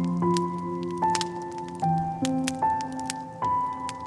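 Slow solo piano music, a new note or chord about every half second to a second, with a wood fire crackling underneath in small sharp pops and snaps.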